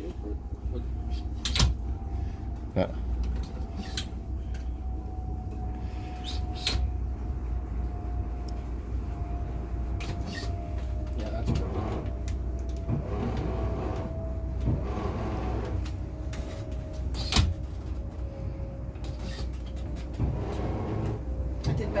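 A motor yacht's inboard engines idling with a steady low rumble during slow docking manoeuvres, under a faint whine that slowly falls in pitch. A few sharp clicks stand out now and then, and low voices come in near the middle.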